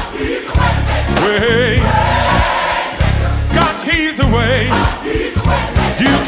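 Gospel choir singing with a band, the voices held in wavering vibrato over a heavy bass line.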